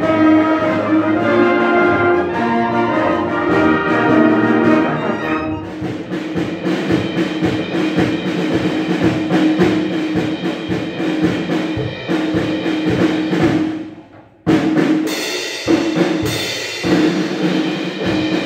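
A community orchestra of strings, winds, brass and percussion playing a loud piece together. A little before the end the music breaks off for a moment, then comes back in with sharp, loud accented chords.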